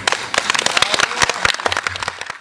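Audience applauding: many irregular hand claps.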